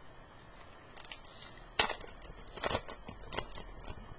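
Baseball card pack wrapper being torn open and crinkled: a sharp tear just under two seconds in, then a few shorter crinkles about a second later.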